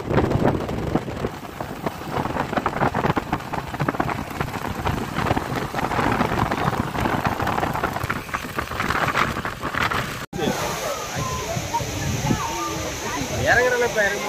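Wind buffeting the microphone on a moving motorcycle, a rough, uneven rush lasting about ten seconds. Then a sudden change to the steady hiss of a waterfall with a crowd's voices.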